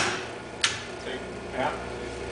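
Two sharp clicks about two-thirds of a second apart: relays or contactors on a PLC trainer panel switching as its start-delay timer times out and the machine starts, with a low hum setting in at the first click.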